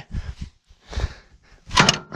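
Metal clunks from the hand clutch and gear levers of a 1942 Caterpillar D2 crawler being moved with the engine off, the clutch lever pushed forward: a few short knocks, one about a second in.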